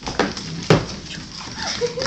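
Two sharp knocks about half a second apart, the second the loudest, from an empty plastic water bottle being knocked about on a hardwood floor by a Cairn terrier puppy at play.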